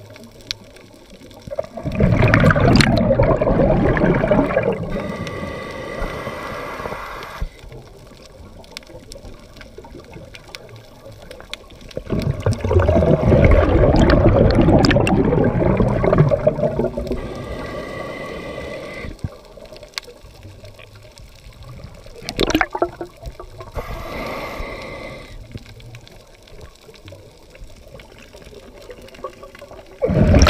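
Scuba diver breathing through a regulator, recorded underwater: three bursts of exhaled bubbles, about ten seconds apart, with quieter regulator hiss between them.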